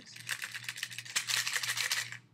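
Metal bobby pins rattling inside a cut-down plastic body mist bottle as it is shaken, a fast run of clicks that gets louder about halfway through.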